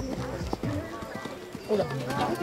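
Hoofbeats of a pony cantering on a sand arena, with people's voices talking over them.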